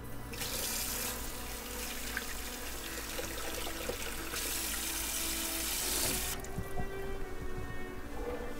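Kitchen sink tap running, the water splashing over a hand being washed off; the flow stops abruptly about six seconds in.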